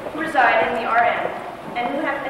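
A young woman's voice speaking into a podium microphone, amplified through the hall's sound system.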